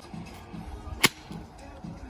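A golf club striking the ball once, a single sharp crack about a second in, over background music with a steady low beat.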